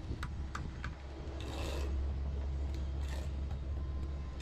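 Steel bricklaying trowels scraping and tapping against solid concrete blocks as mortar is worked at the joints: a few light clicks in the first second, then two longer scrapes about one and a half and three seconds in, over a steady low rumble.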